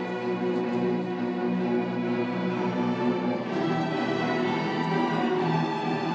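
An orchestra, led by its violins, cellos and double basses, plays a slow passage of long, sustained chords.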